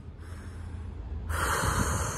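A woman's tired sigh: a faint intake of breath, then a long, louder exhale through pursed lips starting a little past halfway.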